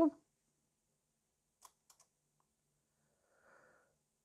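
Mostly near silence, with a few faint clicks from a camera being handled about halfway through, then a brief soft hiss near the end.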